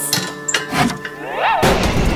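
Cartoon sound effects over background music: a few knocks and a short swooping tone, then about a second and a half in a loud, noisy rush begins as liquid spills onto an electrical appliance, which shorts out and sparks.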